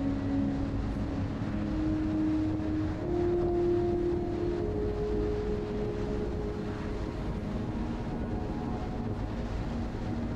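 BMW R1200RT boxer-twin engine running at cruising speed, with road and wind noise, a steady low rumble and a hum that steps up in pitch a few times in the first half.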